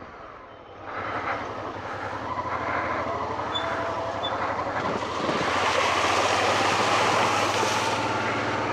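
Honda XL650V Transalp's V-twin engine running at a steady pace on a dirt track, with wind and tyre noise. The noise swells about five seconds in as the bike rides through a large muddy puddle.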